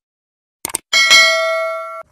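Subscribe-button animation sound effect: a quick double click, then a bell chime about a second in that rings on with a slow fade and is cut off abruptly.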